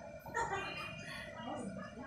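A loud, high pitched call starts about a third of a second in and lasts about a second, followed by a fainter call near the end.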